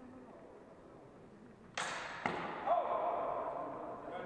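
Steel training swords clashing in a fencing exchange: a sudden bright scrape of blade on blade just under two seconds in, a second sharp hit about half a second later, then ringing that fades out.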